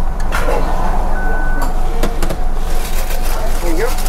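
Car engine idling, a steady low rumble heard inside the cabin, with a few clicks and one short high beep a little after a second in.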